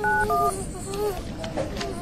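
Two phone keypad tones (DTMF beeps) in quick succession at the start, over the thin buzz of a wasp that wavers in pitch.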